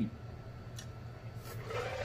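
Faint drinking and chewing sounds: a couple of soft mouth clicks and a breathy exhale near the end as a long drink from a jug finishes, over a steady low hum.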